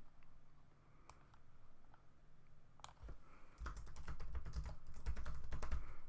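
Typing on a computer keyboard: a few scattered key clicks at first, then a fast run of keystrokes through the second half.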